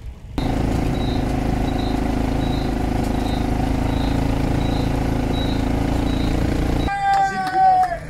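Steady engine and road noise of a vehicle pacing a climbing cyclist, starting abruptly about half a second in and cutting off near the end, with a faint high tick repeating a little more than once a second. Then a man's voice calls out in a long, slightly falling shout.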